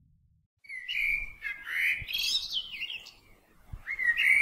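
Birds chirping and whistling in short, gliding calls and quick trills, beginning about half a second in after a moment of silence.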